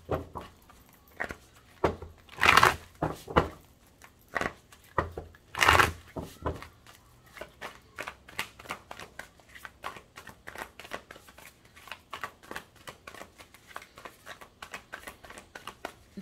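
A deck of tarot cards being shuffled by hand: a few louder riffling rushes in the first six seconds, then a long run of quick, soft card flicks.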